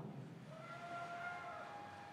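Quiet arena room tone as the echo of the announcer's voice dies away, with a faint held call about a second long, starting about half a second in.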